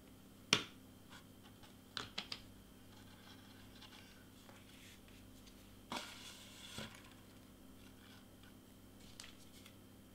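Cardstock leaves being handled and pressed onto a foam wreath: a sharp click about half a second in, a quick run of three clicks around two seconds, a short paper rustle a little past halfway and a few faint clicks near the end, over a faint steady hum.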